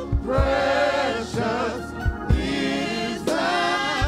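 Gospel praise team of several women singing together into microphones, voices holding long wavering notes in harmony, with a couple of low thumps from the accompaniment underneath.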